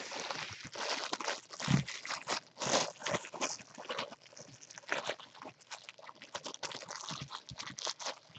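Clear plastic wrap crinkling and crackling irregularly as hands pull it off a baseball.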